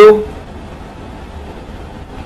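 A man's voice ending a word just at the start, then a steady low hum of background noise with nothing else happening.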